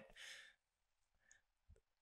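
Near silence, with a soft exhaled breath, a sigh, in the first half second and two faint ticks later on.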